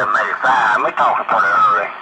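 A male ham radio operator's voice received over the air and played through a shortwave receiver's speaker, thin and lacking bass, with the pitch wavering in and out.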